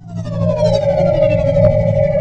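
Synthesized logo sound effect: a cluster of electronic tones gliding downward in pitch, settling into one steady held tone over a low humming drone. It swells up quickly out of silence.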